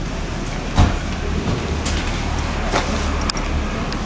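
Low rumble of a motor vehicle, with a single sharp thump a little under a second in.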